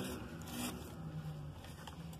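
Soft rustle of a printed paper flyer being handled and laid down on a table.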